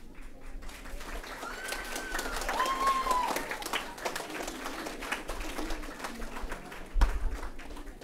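Audience clapping in an auditorium, with a couple of high calls that rise and fall around two to three seconds in. A single loud thump comes about seven seconds in.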